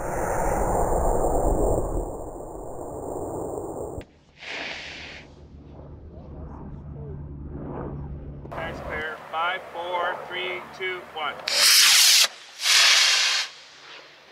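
Model rocket motor igniting and lifting the rocket off the launch rod: a loud rushing roar for about two seconds that fades away. Faint voices follow, then two loud rushes of noise about a second apart near the end.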